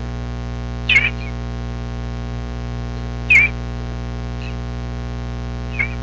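Three short bird chirps, the first two loud and the last fainter, over a steady electrical hum.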